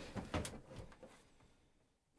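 Plastic Festool Systainer tool cases being pushed and shifted on a stack: a few light knocks and scrapes in the first half second.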